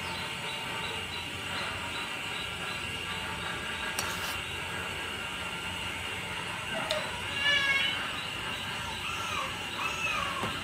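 A pot of aloe vera pieces at a steady boil on a portable gas cassette stove, with a steady hiss. A short wavering call sounds about seven and a half seconds in, with fainter ones near the end.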